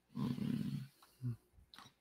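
A man's low, drawn-out hesitation sound, an "uhh", lasting under a second, then a brief short one about a second later, as he pauses mid-sentence searching for words.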